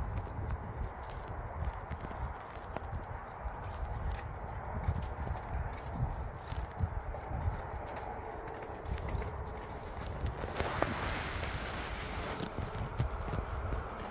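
Horse's hooves stepping irregularly on packed, icy snow as it is walked, in a scatter of dull knocks. About ten seconds in, a brief rustling hiss.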